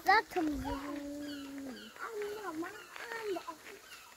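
A voice holds one steady drawn-out note for about a second and a half, then wavers up and down in short voice-like sounds, with faint high chirps behind.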